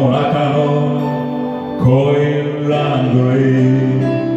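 Karaoke backing music for a slow Japanese blues song, with a man singing along into a handheld microphone in long held notes. A new loud chord comes in about two seconds in.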